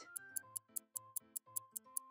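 Clock-ticking sound effect, about five quick ticks a second, over soft background music: a guessing countdown timer.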